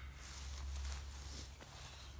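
Fabric rustling as a person settles back into a lightweight aluminium-framed camp chair with a polyester seat, mostly in the first second and a half, over a low steady rumble.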